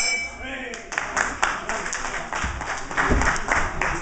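Hand clapping: a quick run of sharp claps, about five a second, starting about a second in.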